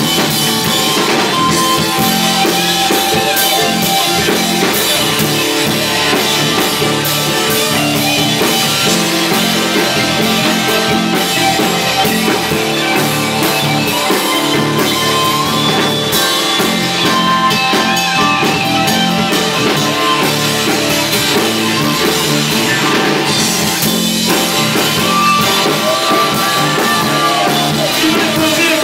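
Live band playing an instrumental passage: drum kit, electric guitar, bass and keyboards together, with long held lead notes over a steady groove.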